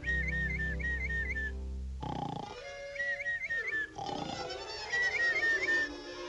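Cartoon snoring of a sleeping bulldog, voiced by the orchestral score: a short rasping inhale about every two seconds, each followed by a run of quick warbling whistle notes on the exhale.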